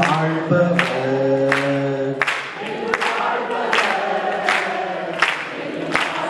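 Slow worship singing led by a man's voice into a microphone, holding long notes, with other voices singing along. A sharp beat marks time about every three-quarters of a second.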